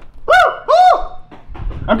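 A person's voice making two short hooting calls, each rising then falling in pitch, about half a second apart.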